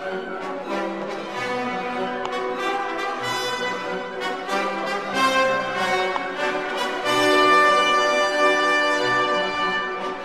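Orchestral background music with brass prominent, building to long held chords that are loudest about seven seconds in.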